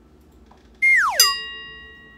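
A whistle-like tone sliding quickly down in pitch, then one bright bell-like chime that rings and fades: a cartoon-style sound effect closing the video.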